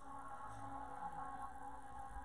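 Faint ambient music: a soft, held chord of steady tones.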